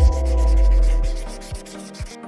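Marker pen rubbing across a whiteboard in quick strokes as words are written, over background music. A deep bass hit at the start dies away over the first second and a half.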